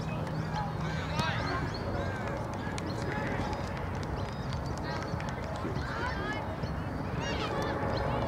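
Distant shouts and calls of players across a soccer pitch, short and scattered, over steady background noise.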